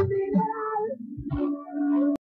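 Live rock band music between sung lines; the playing thins out about halfway and a single note is held to the end.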